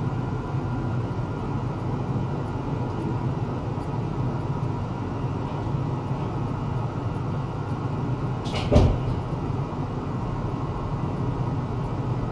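Steady low hum and noise from running test-bench equipment, with faint steady high tones. A single short knock about nine seconds in.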